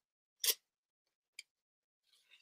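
Brief handling noise of knives on the tabletop: one short, fairly loud knock about half a second in, then a faint light click about a second later.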